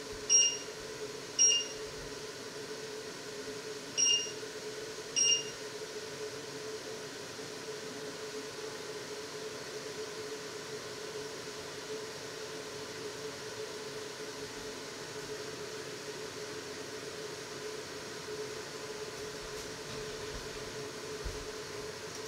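Touch controls of an electric glass-ceramic cooktop beeping as they are tapped: four short high beeps in two pairs within the first six seconds, over a steady hum.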